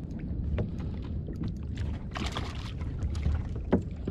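Water moving against a plastic fishing kayak, with a low wind rumble on the microphone and scattered small clicks. About two seconds in there is a short rushing splash as a hooked fish breaks the surface, and a sharp knock comes shortly before the end.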